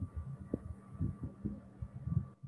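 Irregular muffled low thumps, several a second, over a faint steady electrical hum: a stylus knocking on a tablet as a word is handwritten, picked up through the desk by the microphone.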